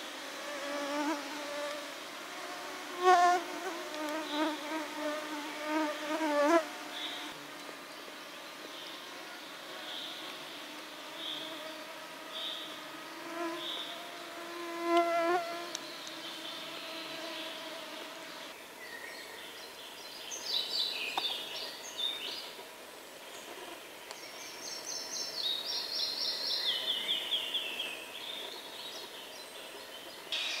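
Flying insects buzzing close by in several bouts, their pitch wavering as they pass, loudest in the first few seconds and again about halfway through. Short high chirps repeat about once a second in the first half, and later a bird sings runs of high notes that step down in pitch.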